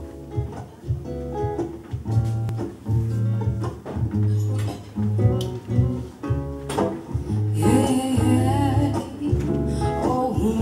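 Slow acoustic intro: acoustic guitar picking with a cello holding low sustained notes. Near the end a woman's voice comes in, singing without words.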